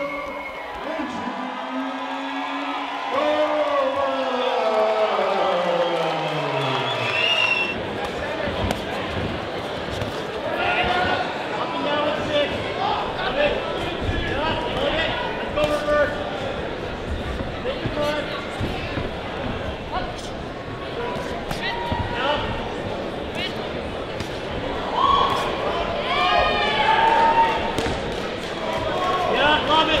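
Live ringside sound of a boxing bout in a large, echoing hall: voices shouting and calling out, with repeated sharp thumps from the ring. A long tone slides downward in the first few seconds, and the shouting swells about 25 seconds in.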